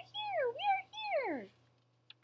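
A woman's voice pitched up to a tiny squeak, crying the Whos' "we are here" about three times, the last call sliding steeply down in pitch and stopping about a second and a half in.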